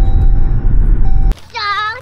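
Loud, low rumble inside a car cabin that cuts off abruptly a little over a second in. A woman starts speaking right after.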